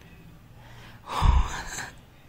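A man's sharp breath of surprise, a gasp, about a second in, loud and breathy with a low puff of air hitting the microphone.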